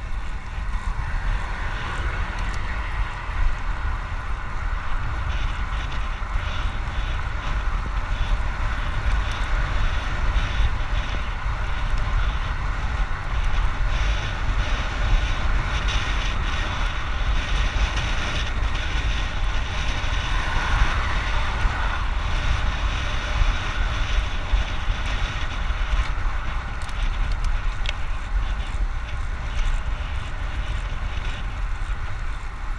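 Wind buffeting the microphone of a camera on a moving road bike: a steady low rumble, with the hiss of the tyres rolling on asphalt.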